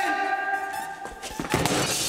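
A football strikes a single-glazed window pane and the glass shatters: a loud thud about one and a half seconds in, followed by breaking glass.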